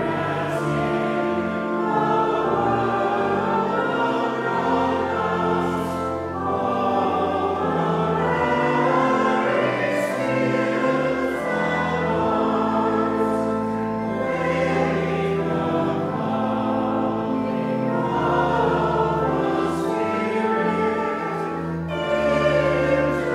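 Congregation singing a hymn together in unison over an instrumental accompaniment of sustained chords, without a break.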